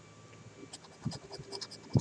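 A coin scraping the coating off a lottery scratch-off ticket. It makes a run of short, irregular scratches that start about two-thirds of a second in.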